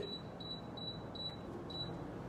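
A faint series of short high-pitched electronic beeps, about three a second, over low room hiss.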